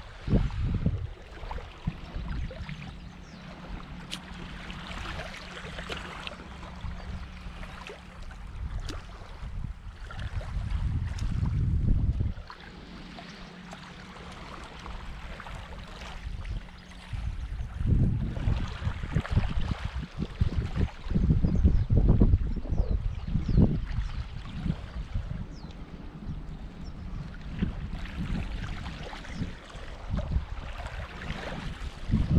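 Wind buffeting the microphone in gusts, strongest about a third of the way in and again in the second half, over small waves lapping on a shingle shore.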